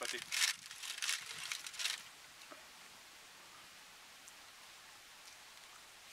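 A food wrapper crinkling in short bursts for about two seconds as a pastry is taken from it.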